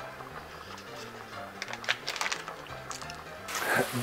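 Soft background music with a few light clicks, then about three and a half seconds in, sliced mushrooms start sizzling in butter and olive oil in a hot frying pan.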